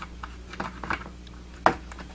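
Small plastic clicks and taps as a hard plastic action figure is pressed against a plastic toy vehicle, feeling for the foot-peg holes on its steps. There is one sharper click about a second and a half in, over a faint, steady low hum.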